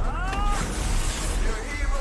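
A short high cry in the first half-second, rising then levelling off, over loud film music and action effects with a deep rumble.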